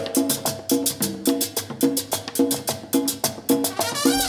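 Live salsa orchestra playing a steady percussion-driven groove with short repeated notes.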